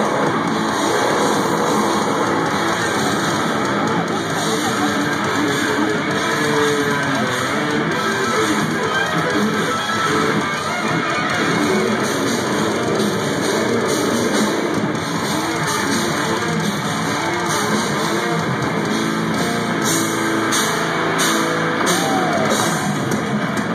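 Death metal band playing live at full volume: distorted electric guitars riffing over bass and drums in a dense, unbroken wall of sound.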